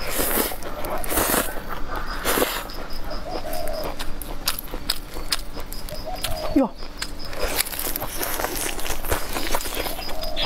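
Slurping and chewing of stir-fried rice noodles, with broad wet sucking sounds in the first few seconds and many sharp mouth clicks while chewing.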